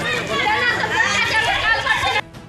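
Several people talking over one another at once, a loud jumble of overlapping voices.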